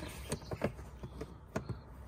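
A few faint, irregular clicks and taps of plastic as a hand turns and works the headlight access cover in a BMW E90's plastic wheel-arch liner.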